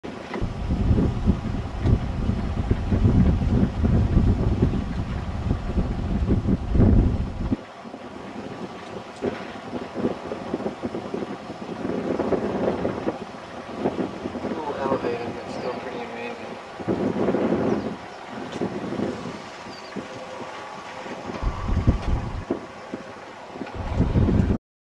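Wind buffeting the microphone, loud and low for about the first seven seconds and then cutting off abruptly. It is followed by a quieter outdoor background with faint, intermittent voices.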